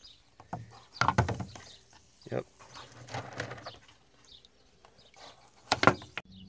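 Agates knocking and splashing as they are dropped into a plastic jug of water: a sharp knock about a second in, a smaller one a little later, softer sloshing in the middle, and another sharp knock just before the end.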